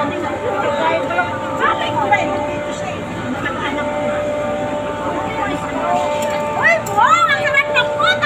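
Several people talking and calling out over one another, with a steady background hum; near the end come a few high voice calls that rise and fall in pitch.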